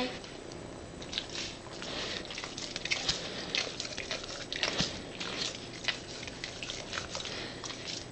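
Great Dane licking a small kitten: irregular wet smacks and laps of the tongue.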